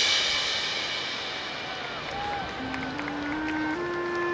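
Marching band music: a loud full-band chord with a cymbal wash dies away, leaving a soft passage in which a single sustained melody line climbs note by note from about halfway through. A steady haze of crowd noise sits underneath.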